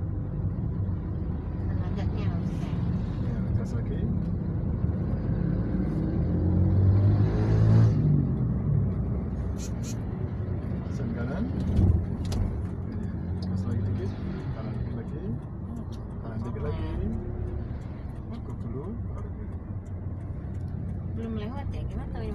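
Manual car driving slowly, heard from inside the cabin: a steady low engine and road rumble. It swells louder about seven seconds in, and there is a single thump about halfway through.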